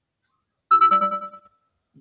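A short, loud musical chime with several notes sounding together. It starts suddenly about two-thirds of a second in and fades away within a second.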